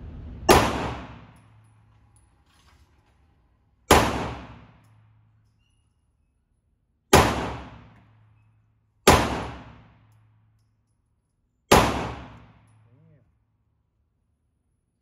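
Five 9mm pistol shots from a Steyr C9-A1, fired slowly two to three seconds apart, each sharp crack followed by about a second of indoor-range echo.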